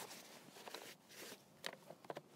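Faint rustle of the camp chair's seat fabric being folded, with a few light taps as it is set into the hard plastic case; otherwise near silence.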